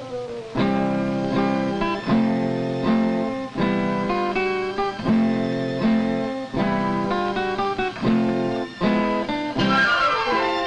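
A banjo strummed in a steady rhythm of chords, struck about once or twice a second. Near the end a falling glide in pitch runs over it.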